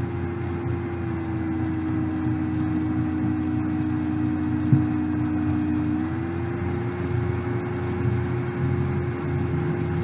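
A steady background drone with a low hum under it, its tone dipping slightly in pitch about a second in and rising again about six seconds in. There is a single short click just before the five-second mark.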